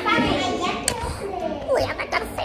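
Children's voices talking and chattering, with no clear words.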